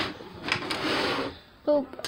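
Hands handling a plastic LEGO model, bricks rattling and scraping for about a second as a piece comes loose, followed by a short spoken 'Oh'.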